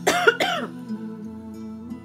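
A woman coughs twice in quick succession into her fist near the start, over soft new-age background music with steady held tones.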